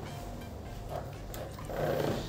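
A white panel bathroom door being swung shut: faint sounds of the door moving, with a slightly louder bump near the end as it closes.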